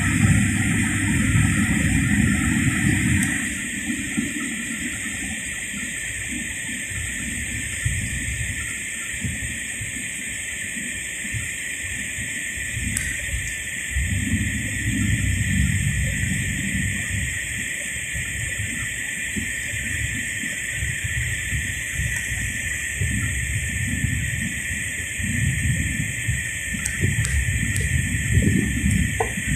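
Car-cabin noise while driving slowly in light rain: a steady hiss over a low, uneven rumble that swells and eases several times.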